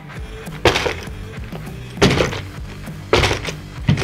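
Plastic RC truck chassis knocking against the workbench three times, about a second and a half apart, as it is pushed down and bounces on its shocks. The shocks give almost no damping resistance; they are grease-filled rather than oil-filled.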